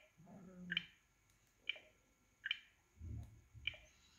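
Faint, short clicks of a smartphone's side power key, the Huawei Nova 5T's press-down fingerprint sensor, pressed several times at roughly one-second intervals, with soft low handling rumbles between the presses.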